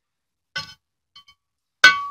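Aluminium carburetor hat being handled: a faint light clink or two, then one sharp metallic clink near the end that rings on as a single clear tone.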